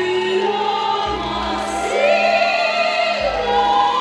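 Slow waltz music for the competition dance: a singing voice over sustained orchestral accompaniment, with a low bass note about every two seconds.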